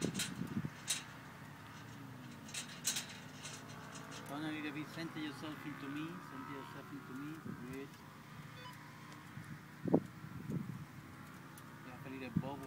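Faint, indistinct voices murmuring in the middle of the stretch and again near the end, with a few sharp clicks early on and a single louder knock about ten seconds in.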